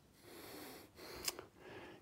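Faint breathing close to the microphone, three short breaths with quiet between them, and a small click just past the middle.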